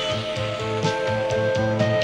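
Background music from a cartoon soundtrack: sustained held notes over a steady, repeating low pulse.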